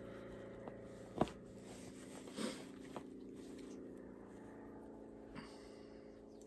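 Faint steady hum of a quiet room, broken by a few small clicks and rustles as a seam ripper cuts the stitches of a fabric cushion cover. The sharpest click comes a little over a second in.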